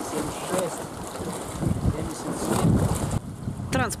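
Wind buffeting an outdoor camera microphone in gusty, rumbling blasts, with faint voices underneath; it cuts off abruptly about three seconds in.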